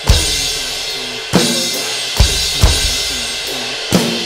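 Electronic drum kit played hard in a 6/8 groove: kick and snare hits with a big washy ride and crash cymbal sound ringing throughout, five strong accents in about four seconds.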